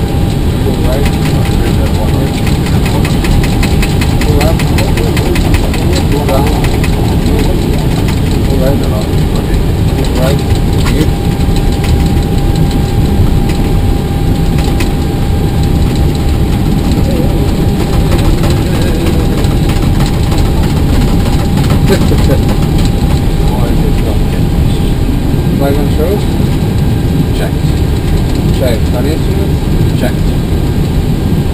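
Airbus airliner cockpit noise while taxiing with the engines at idle: a loud, steady low rumble with a steady mid-pitched tone above it. A fast ticking runs for a few seconds about two seconds in.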